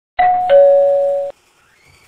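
A two-note ding-dong chime, a higher note followed by a lower one, ringing for about a second and then cut off suddenly.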